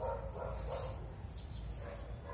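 Two short animal calls in the first second, with a high-pitched sound between them, over a steady low rumble.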